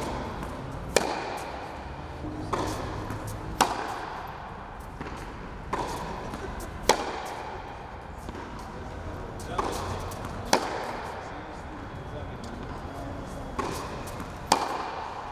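Tennis rally in an indoor hall: sharp strikes of racket on ball about every three seconds, with softer ball bounces between, each followed by the hall's echo.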